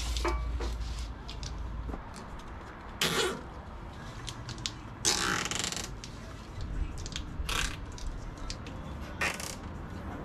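Heavy battery cable being pulled and fed along the engine bay, rubbing and scraping against the bodywork in four short bursts. The longest burst comes about halfway through.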